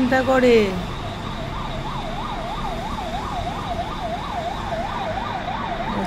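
An emergency vehicle's siren in fast up-and-down sweeps, about three a second, starting a little over a second in, over steady city traffic noise.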